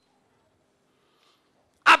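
Near silence, then a man's voice starts loudly through a microphone near the end.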